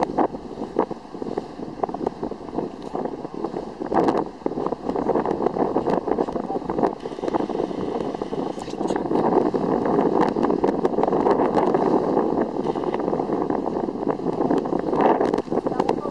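Wind buffeting the microphone on the deck of a moving boat: a steady rush with stronger gusts about four seconds in and again near the end.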